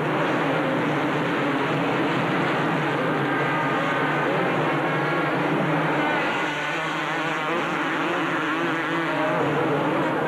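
Several 250cc two-stroke motocross bikes racing, their engines revving hard, with the notes rising and falling as riders work the throttle.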